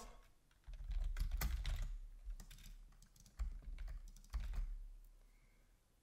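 Typing on a computer keyboard: a run of key clicks starting under a second in, broken by a couple of short pauses, and stopping shortly before the end.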